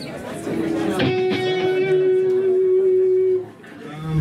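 Amplified electric guitar: a single note struck about a second in and left ringing steadily for a couple of seconds, then cut off suddenly. Crowd chatter can be heard under the first second.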